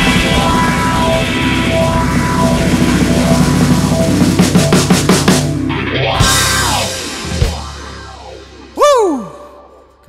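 Live rock band of drum kit, electric bass and keyboard playing the closing bars of a song, with the full band stopping about five and a half seconds in. The last chord rings and fades, and near the end one short loud note slides down in pitch.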